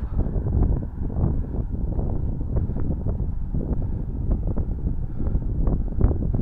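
Wind buffeting the microphone of a camera on a moving bicycle: a steady low rumble with light knocks scattered through it.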